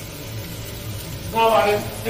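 A person's voice says a short word about one and a half seconds in, over a steady low hum.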